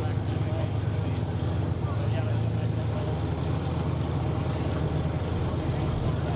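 Steady low rumble of drag-racing car engines running at the starting line.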